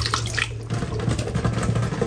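Water running into a rice cooker's inner pot of rice, topping up the cooking water.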